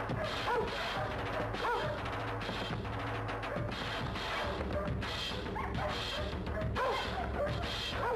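Dogs barking several times in short bursts over background music.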